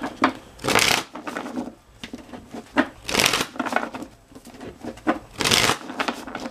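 A tarot deck being shuffled by hand: three loud rustling bursts about two and a half seconds apart, with softer card flicks and taps between them.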